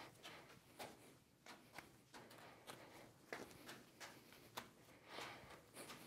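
Three juggling balls being juggled by hand: faint, soft catches and slaps of the balls landing in the palms, about two to three a second.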